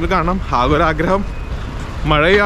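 A man talking for about the first second, then pausing, over a steady low rumble of street traffic.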